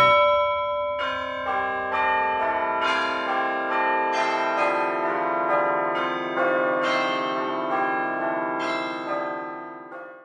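Bell-like chime tones struck one after another in a melodic run, each ringing on and overlapping the next, fading out near the end.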